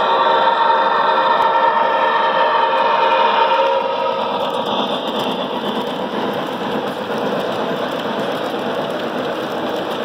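Model steam locomotive running past with a steady hum that drops away after about four seconds, followed by the steady rolling noise of its freight cars on the track.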